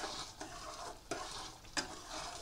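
A metal spatula stirring boiling rock-sugar syrup with ghee in an aluminium kadai: the steady bubbling hiss of syrup at a full boil, with a few sharp clinks of the spatula against the pan, the loudest near the end.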